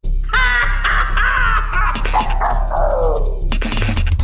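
A long, harsh, distorted scream that slides steadily down in pitch for about three seconds, over a low droning music bed.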